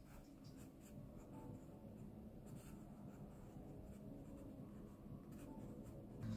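Faint scratching of a wooden graphite pencil on sketchbook paper, in short sketching strokes.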